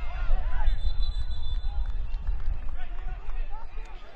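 Pitch-side sound of an outdoor soccer match in play: a steady low rumble with players' voices calling faintly across the field.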